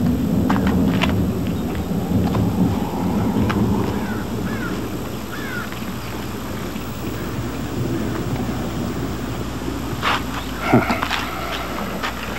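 Outdoor ambience with a low rumble, strongest in the first few seconds, a few short chirps around the middle, and a brief animal-like call about ten seconds in.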